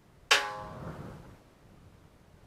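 A single sudden percussive hit with a ringing tone, an edited-in music sting that fades away within about a second.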